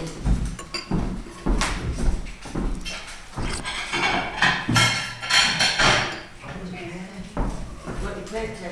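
Voices and laughter mixed with irregular knocks and rustling handling noise, loudest and hissiest around the middle.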